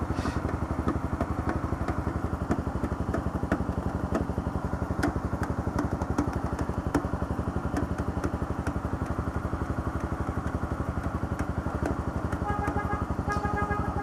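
Honda CB300's single-cylinder engine idling steadily with a fast, even pulse while the motorcycle stands still. A short run of evenly spaced beeps sounds near the end.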